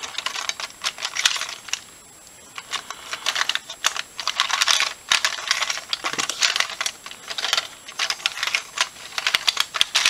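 LEGO bricks of a homemade 1x2x3 twisty puzzle clicking and clattering as its layers are turned rapidly by hand, with a short pause about two seconds in.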